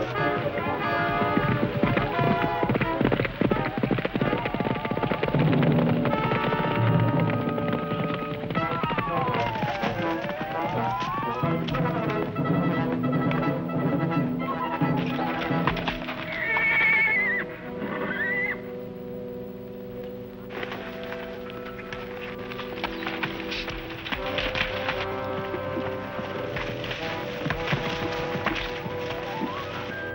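Orchestral western film score over horses galloping, their hoofbeats dense through the first half. About halfway through, a horse whinnies. The music carries on with hooves in the second half.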